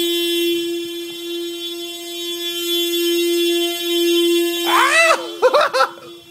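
A Mazda's car horn stuck on, sounding one continuous steady tone with nobody pressing it. It is a fault that only a flat battery will stop. Near the end a person's voice wails over it, rising and falling in pitch.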